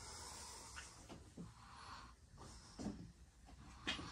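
Quiet cabin with faint rustling and a few soft knocks, the loudest near the end.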